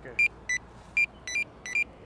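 Pedestrian crossing push button beeping again and again as it is pressed rapidly: short, high electronic beeps in two alternating pitches, about three a second, unevenly spaced.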